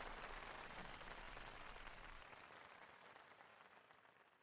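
Faint applause from a large audience, fading out about three seconds in.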